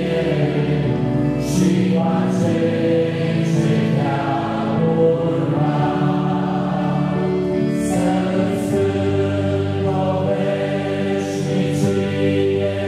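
Church congregation singing a hymn together, many voices holding long notes phrase after phrase.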